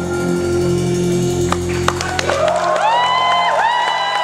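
The final held keyboard chord of a darkwave song dies away, and halfway through the audience starts to cheer, with a high voice gliding up twice near the end.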